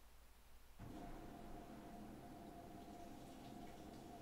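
Titan TN-1541S industrial sewing machine starting up about a second in and then stitching at an even pace: a faint steady hum with a steady tone over it.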